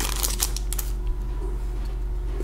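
Stack of trading cards sliding out of a torn foil card-pack wrapper, with crinkling and card rustling in the first second, then quieter handling over a steady low hum.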